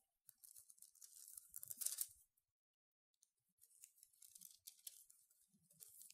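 Faint rustling of thin Bible pages being turned, in short scraps with a quiet gap in the middle; the pages are hard to turn.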